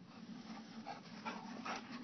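A German Shorthaired Pointer making short dog sounds, a quick run of them in the second half, over a steady low hum.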